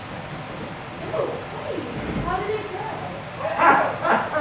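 A person's voice whining and whimpering, sliding up and down in pitch, then a louder burst of voice near the end.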